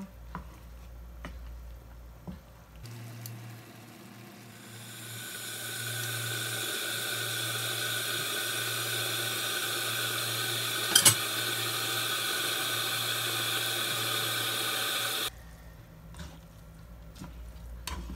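Spaghetti and shrimp sizzling in a frying pan. The sizzle builds over a couple of seconds and then holds steady, with one sharp clink of a utensil against the pan partway through, and it cuts off suddenly near the end. Before it there are only a few faint utensil clicks.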